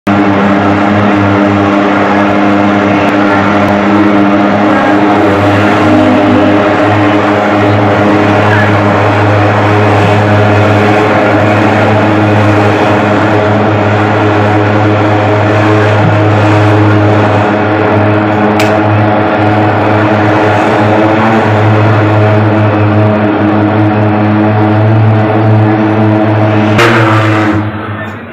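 Handheld pulse-jet thermal fogging machine running with a loud, steady drone as it sprays fog. The sound drops away suddenly near the end.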